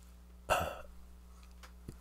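A short, sharp intake of breath by a person about half a second in, over a faint steady low hum of room tone.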